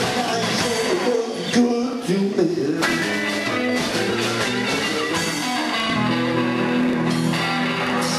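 Live blues band playing, with electric guitar over bass and drums and some bending guitar notes in the first few seconds. Recorded from the audience, so the sound is rough.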